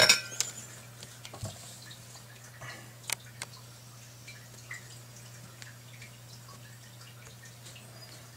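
Scattered light clicks and taps from handling a circuit board, alligator clip and soldering iron on a workbench, sharpest right at the start and about three seconds in, over a steady low hum.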